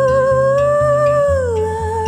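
A female singer holding one long note with a light vibrato, gliding down to a lower note about one and a half seconds in, over steadily strummed acoustic guitar.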